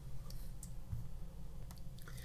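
A few faint clicks of a stylus tapping a tablet screen while a word is handwritten, over a low steady hum.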